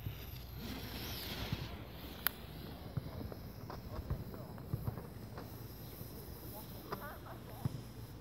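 Faint hiss of a homemade smoke flare burning as it pours out smoke, strongest about a second in, with a few light clicks over low outdoor background noise.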